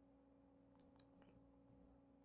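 Near silence, with a faint steady hum and a few faint squeaks and taps from a marker writing on a glass lightboard, about a second in.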